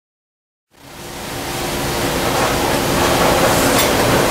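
Steady rushing background noise of a workshop with a faint low hum, fading in from silence about a second in.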